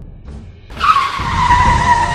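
Tire-screech sound effect: a sudden high squeal starting about three-quarters of a second in, sliding slightly down in pitch and then held, over a low music bed.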